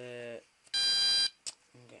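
One short, loud electronic beep from a fire alarm control panel's internal buzzer, on a panel that is still showing faults, followed by a faint click.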